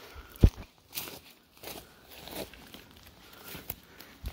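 A hiker's footsteps, a few uneven steps, with one loud low thump about half a second in.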